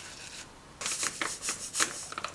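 A paper towel rubbing butter around the inside of a ceramic ramekin: soft scrubbing strokes that turn louder and choppier a little under a second in.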